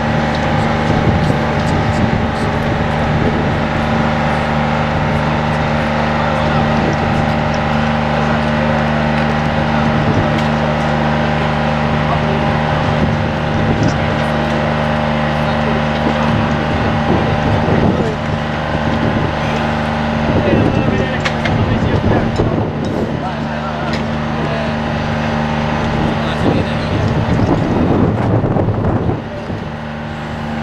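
A large engine running steadily at constant speed, with voices of people around it.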